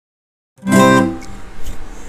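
Silence, then about half a second in an acoustic guitar chord is struck loudly and rings out, fading over the next second.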